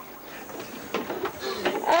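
A child diving into a backyard swimming pool, with the splash of water near the end.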